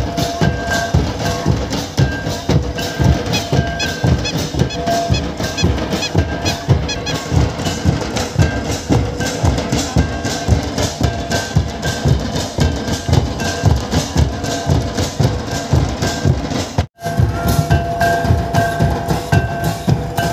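Folk dance drumming on large double-headed barrel drums, some beaten with sticks, in a fast, steady rhythm. A high held note comes and goes above the drums. The sound drops out for an instant near the end.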